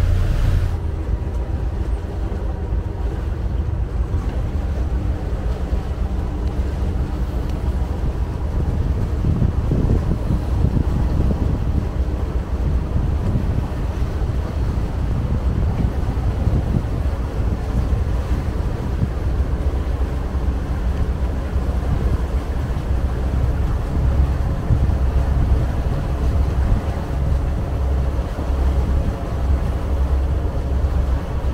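The Sea Ray Sundancer's twin MerCruiser 7.4-litre V8 inboard engines running steadily under way, a low rumble, with wind buffeting the microphone and water washing along the hull.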